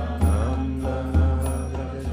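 A man chanting a mantra in a sustained singing voice, accompanied by a mridanga drum with a deep bass stroke about once a second and lighter strokes between.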